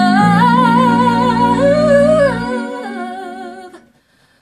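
A woman's solo singing voice holding a long, wordless, wavering line with vibrato, over a low sustained backing chord that stops about two and a half seconds in. The voice then fades out just before the end.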